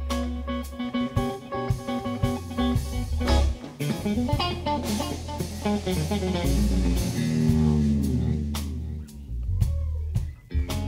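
Live blues electric guitar solo on a Stratocaster-style guitar, with a quick run of notes and string bends that slide downward past the middle, over bass guitar and drum kit.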